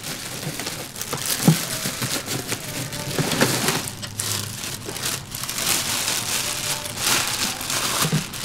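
Clear plastic bag crinkling and rustling in irregular handfuls as a car subwoofer is lifted out of its box and unwrapped, with a sharp knock about a second and a half in.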